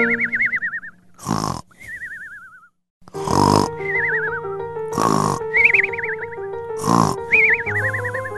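Cartoon snoring sound effect, repeated about four times: each a grunting snore followed by a wavering whistle that slides down in pitch. Light background music plays throughout.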